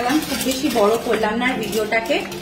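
Clear plastic packet rustling and crinkling as it is handled, over a woman's voice.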